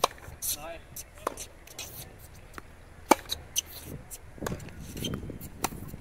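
Tennis balls struck by racquets and bouncing on a hard court during a baseline rally: a series of sharp pops one to two seconds apart, the loudest about three seconds in.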